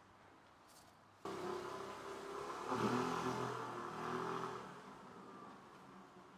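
A motor vehicle's engine going by. It starts suddenly about a second in, is loudest near the middle and fades away.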